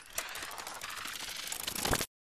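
Film-projector sound effect: a rapid, even mechanical clicking of turning reels, growing a little louder near the end and stopping abruptly.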